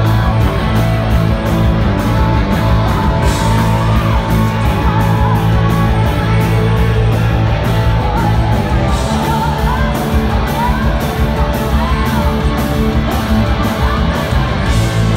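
Live rock band playing loud: distorted electric guitars, bass and drums with a steady cymbal beat, and a female singer over the top.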